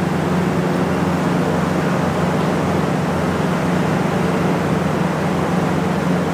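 Steady background noise with a low hum, unchanging throughout.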